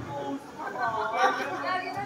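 Indistinct talking: background chatter of voices, with no words clear enough to be written down.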